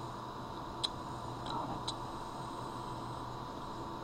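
Pencil drawing on paper: three short, light ticks about a second in and just before two seconds as the lead touches and moves on the sheet, over a faint steady hum.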